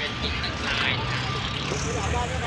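A motor vehicle engine running with a steady low hum, with people talking over it.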